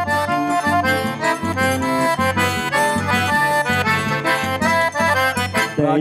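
Forró arrasta-pé instrumental intro: two piano accordions playing the melody together over a steady zabumba bass-drum beat. A singer's voice comes in at the very end.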